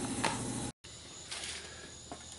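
Steady low background hum with faint steady tones, cutting off suddenly under a second in; after that, only faint background noise.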